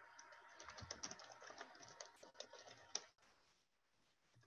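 Faint typing on a computer keyboard: a quick, uneven run of key clicks for about three seconds, ending with a louder click, picked up through a video-call microphone.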